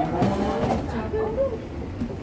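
Indistinct voices of people talking, over the low rumble of suitcase wheels rolling on a hard terminal floor.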